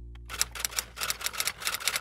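The last held chord of the song fades out. Then, about half a second in, a fast, uneven run of sharp clicks begins, like typing on a typewriter.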